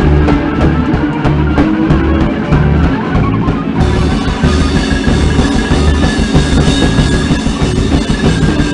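Live noise-rock improvisation played loud: a drum kit pounded under a dense wall of amplified noise. About four seconds in, a bright hiss fills the top end, and a high held tone sounds through the second half.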